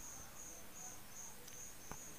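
Faint insect chirping, a high-pitched pulse repeating evenly about three times a second.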